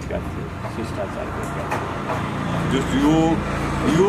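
A road vehicle's engine running as a steady low rumble that grows louder in the second half, under voices talking.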